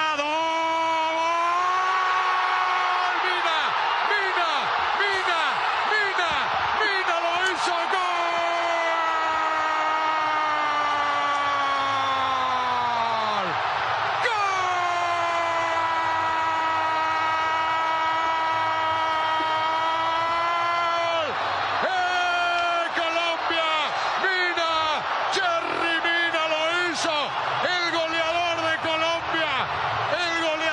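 A male football commentator's drawn-out goal cry, the long held vowel of "¡Gol!": one unbroken shout of over ten seconds that sinks in pitch at its end, a quick breath, a second held shout of about seven seconds, then shorter, wavering excited calls.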